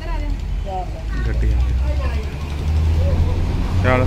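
Several people talking quietly over a steady low rumble, with one short louder voice near the end.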